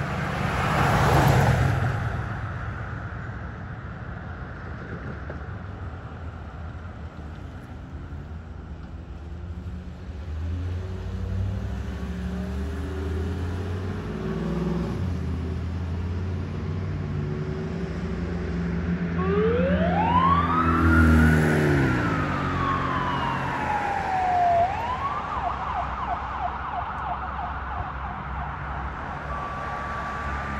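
A 2022 Ford E-450 ambulance accelerates away, its engine note climbing in steps. About two-thirds of the way through, its electronic siren sounds one long wail, rising then falling, and then switches to a fast yelp.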